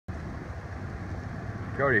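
Steady wind rumbling on a phone microphone outdoors, with a man's voice starting near the end.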